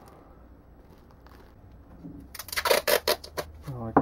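Plastic cling film crackling as it is wrapped and handled: a dense burst of crackling starts about two seconds in and lasts about a second.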